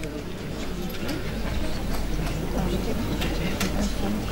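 Concert-hall audience murmuring, with scattered small clicks and knocks over a low steady hum.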